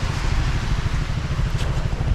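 Wind buffeting the camera microphone: a steady, uneven low rumble.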